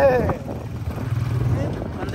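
Steady low engine and road noise from a vehicle being ridden, with a voice calling out briefly at the start.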